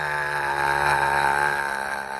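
A man's long, drawn-out throaty vocal sound from a wide-open mouth, held at one steady pitch.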